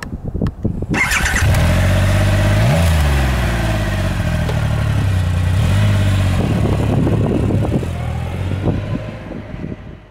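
Triumph Rocket 3 R's 2,458 cc inline three-cylinder engine starting up, catching about a second in, then idling with two short rev blips, around three and six seconds in. It fades near the end.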